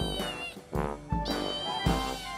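Young kitten meowing: two high-pitched meows, the first trailing off about half a second in and the second starting past the middle. Background music with a steady beat plays under them.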